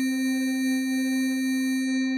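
Serum software synthesizer holding a single sustained note at a steady pitch, its brightest overtones slowly fading out near the end.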